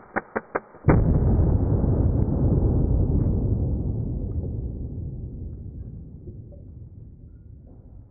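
A slowed-down punch-gun shot into a ballistic-gel head. A few short clicks come first, then about a second in the shot hits as a deep, dull boom that fades away slowly over several seconds.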